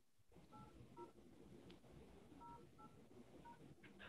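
Faint touch-tone (DTMF) keypad tones coming down a phone line into the Zoom call, about six short beeps in two quick groups, as a caller keys in a participant ID.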